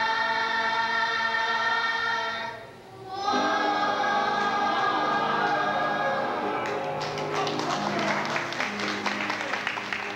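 Choir singing a gospel song in held, sustained notes, with a brief drop about three seconds in. From about seven seconds in, steady rhythmic hand clapping keeps time with the singing.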